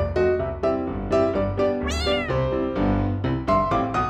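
Bouncy keyboard background music with a single short cat meow about halfway through, rising and then falling in pitch.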